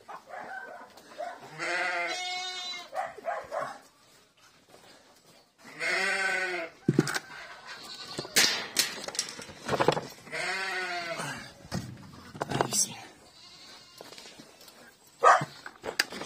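Goats bleating: three long, wavering bleats a few seconds apart. A few sharp knocks fall between them.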